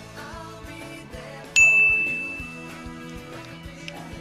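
A single bright ding sound effect about a second and a half in, ringing out and fading over about a second, marking the correct answer in a quiz game. Light background music plays under it.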